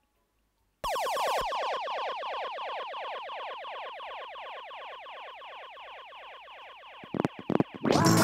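Dub siren firing a fast train of falling zaps, about ten a second, starting suddenly and fading slowly over several seconds. A few clicks follow near the end, and loud music drops in at the very end.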